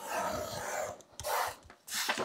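Craft knife blade slicing through manila file folder card along a steel ruler: a long scraping cut, then a shorter second stroke.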